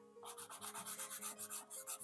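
Kalour soft pastel pencil rubbing over sanded pastel paper in quick short strokes, about six to seven a second, with a faint dry scratch.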